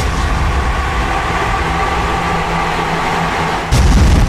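Produced sound effect in a radio show's opening jingle: a steady rushing noise with a held low hum, then a sudden loud boom near the end.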